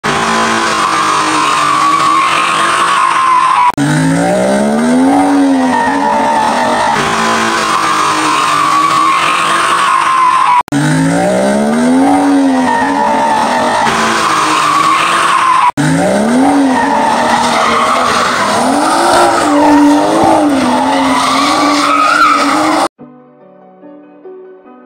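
Cars spinning donuts: tyres squealing steadily while the engines rev up and fall back again and again, in several clips joined by abrupt cuts. Near the end it cuts to quiet music.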